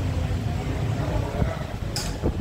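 Steady low rumble of street traffic, with a small knock partway through and a sharp click just before the end.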